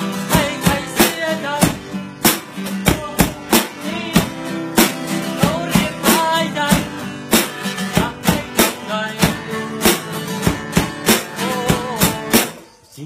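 One-man band music: a strummed acoustic guitar under a steady beat of drum and cymbal hits from a back-mounted kit, with a harmonica carrying a wavering melody.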